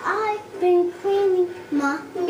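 A young girl singing a short sing-song phrase of several held notes.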